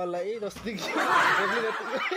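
A person's voice, then breathy snickering laughter that is loudest about a second in.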